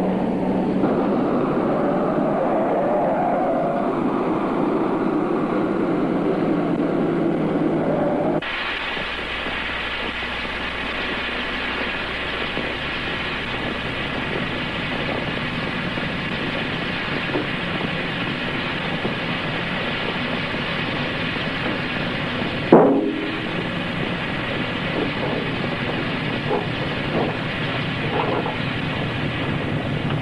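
Film soundtrack music that cuts off abruptly about eight seconds in, giving way to a steady mechanical rumble like a vehicle running; one sharp knock about 23 seconds in, with a few faint ticks near the end.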